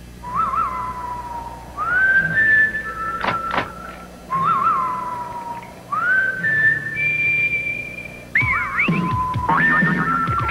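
A whistled tune in short phrases. Each phrase opens with a quick warbling trill, then holds or slides between high notes, and it ends in wavering notes near the end. Two sharp knocks come about three seconds in.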